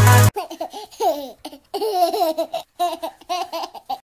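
Electronic dance music cuts off suddenly just after the start, then a baby laughs in a string of short, high giggles.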